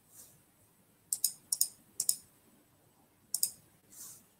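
Clicking at a computer: four quick pairs of short, sharp clicks, the first about a second in and the last near the end, over a quiet room.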